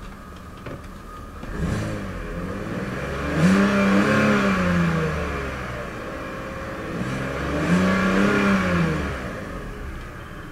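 2005 BMW 525i's 2.5-litre inline-six revved at a standstill from idle, heard inside the cabin: a short blip, then two fuller revs, each rising and falling back to idle over about two seconds.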